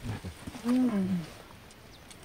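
A person's short closed-mouth 'mm', about half a second long and falling in pitch, with a few faint clicks just before it.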